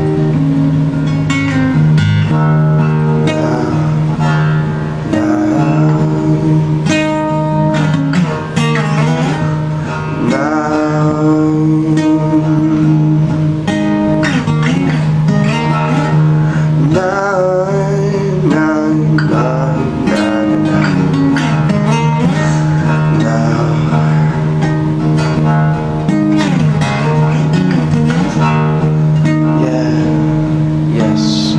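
Music: acoustic guitar strummed and picked, playing steadily.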